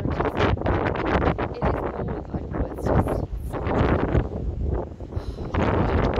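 Strong wind buffeting the microphone in irregular gusts.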